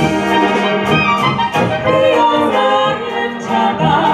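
Slovácko-style Czech brass band (dechová hudba) playing a song, with women singing lead over trumpets, tuba and other brass, and a steady drum beat.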